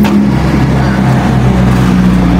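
A steady low engine hum with a noisy rush over it, like a motor vehicle running nearby.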